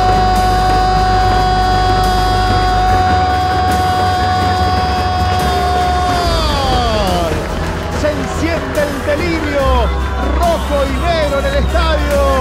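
Background music with a steady bass line under a commentator's long goal cry held on one high pitch for about six seconds, which then slides down and breaks into short rising and falling shouts.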